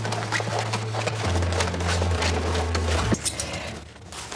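Low held notes of a dramatic film score, ending about three seconds in, over rustling, clicking handling noises of canvas and paper being moved.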